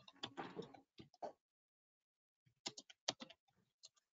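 Faint tapping on a computer keyboard: irregular runs of keystroke clicks, with a silent pause of about a second near the middle.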